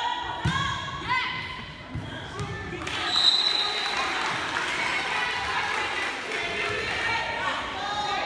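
Girls' volleyball being played in a school gym. High-pitched calls ring out as the ball is served, with a sharp thump of the ball being struck about half a second in. About three seconds in a brief shrill whistle sounds, then many voices cheer and chatter, echoing in the hall.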